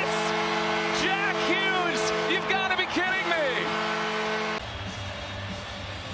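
Arena goal horn sounding in several steady held tones over a cheering, shouting crowd, cutting off suddenly about four and a half seconds in.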